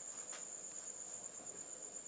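Crickets trilling: one steady, high-pitched, faint insect trill.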